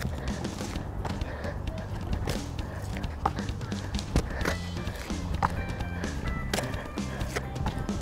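Background music with a steady low bass line, with irregular short thuds of sneakered feet landing on an exercise mat over concrete during plank side-to-side jumps.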